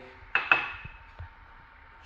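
A small ceramic bowl knocking against the kitchen counter: two quick clinks close together near the start, the second ringing briefly, then a few faint taps.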